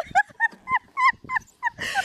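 High-pitched squealing laughter: a run of short squeaks that rise and fall in pitch, about four a second.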